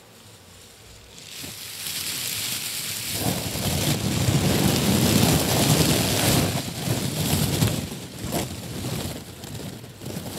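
Strips of shredded paper crumpled and rubbed right against a microphone, giving a dense crackling rustle. It starts quietly about a second in, is loudest in the middle, and eases off near the end.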